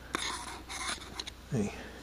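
A screwdriver scraping and clicking against the rim of a metal PVC cement can and its lid, in a run of short scratchy strokes. A brief voiced grunt follows about a second and a half in.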